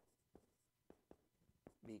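Dry-erase marker writing on a whiteboard: a few faint, short strokes and taps as a word is written.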